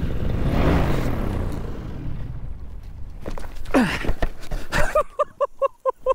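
Wind rushing over the microphone as a powered paraglider comes in fast to land, dying away over about two seconds as it slows and touches down. A few knocks follow, then near the end a rapid run of short pulsed sounds, about six a second.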